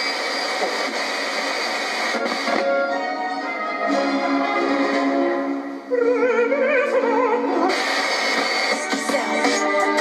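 Music with a singer playing from the FM radio of a Goodmans Quadro 900 portable TV/radio/cassette unit, through its built-in speaker. A few seconds past the middle the singer holds wavering notes.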